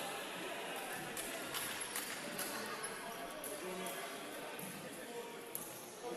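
Futsal play on a hardwood court in a large indoor hall: scattered sharp ball kicks and footfalls over faint players' voices.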